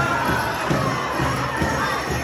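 Powwow drum struck in a steady beat about twice a second, with a group of singers chanting high over it.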